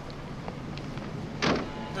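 A car door shutting once, about one and a half seconds in, over low background sound with a few faint clicks; a steady high tone starts just before the end.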